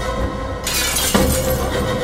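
A glass-shattering sound effect: a sudden crash of breaking glass about two-thirds of a second in, over a sustained film-score chord.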